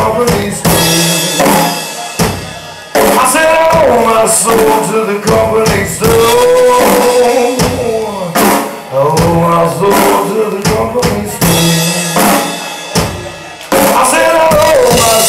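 Live rock band playing electric guitar, bass guitar and drum kit, with a man singing. The sound dies down briefly twice, about two and a half seconds in and near the end, and the whole band comes back in hard each time.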